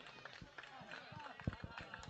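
Faint open-air ambience with distant voices, and a light knock about one and a half seconds in.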